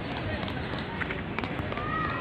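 Indistinct voices of people nearby over a steady rushing background noise, with a couple of faint clicks about a second in.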